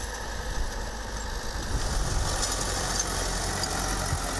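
Diesel farm tractor engine running steadily as it pulls a seed drill across a field.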